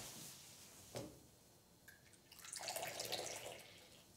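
Tea being poured from a small cast-iron teapot into a cup, a soft trickle lasting about a second and a half from a little past two seconds in. A soft knock about a second in.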